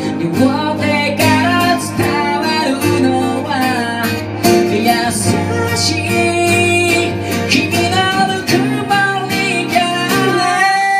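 Two acoustic guitars strummed together with a voice singing the melody over them: a live acoustic guitar duo playing a song.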